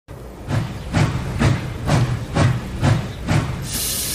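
Steam locomotive chuffing, seven evenly spaced puffs at about two a second, then a steady hiss of steam as the engine comes to a stand.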